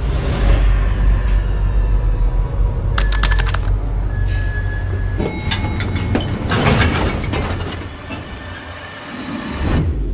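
Film trailer score and sound design: a heavy low rumble, a quick run of sharp clicks about three seconds in, more sharp hits with held tones in the middle, then a swell to a final hit near the end.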